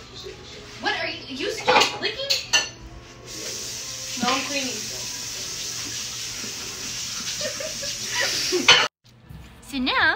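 Dishes and cutlery clattering at a kitchen sink, a quick run of knocks and clinks. Then a tap runs steadily for about five seconds and cuts off suddenly.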